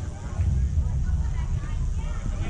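Faint voices of players and spectators calling out around the ball field, over a low rumble that grows louder about half a second in.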